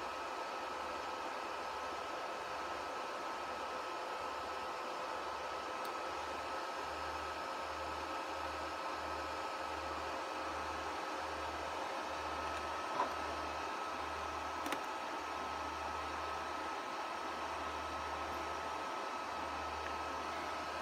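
Steady cooling-fan noise with a faint, constant high whine from electronic gear running while a ham radio amplifier is keyed up on an unmodulated carrier. A couple of faint ticks come partway through.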